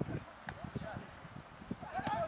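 Faint, distant shouts from players on a football pitch, with a few soft knocks scattered through.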